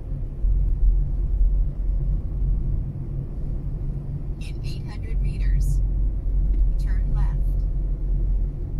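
Steady low rumble of a Mazda3's engine and tyres heard from inside the cabin as it drives slowly along. Two brief voice-like sounds cut in about halfway and near the end.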